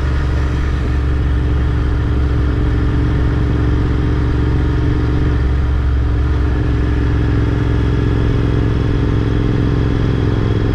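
Motorcycle engine running at a steady cruising speed, heard from the rider's seat with road and wind noise, the pitch holding level throughout.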